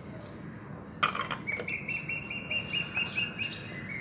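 Small birds chirping repeatedly in the background. A brief knock comes about a second in, and a steady high tone joins from about a second and a half on.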